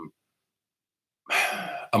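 About a second of dead silence, then a man's short breathy throat noise that runs into speech near the end.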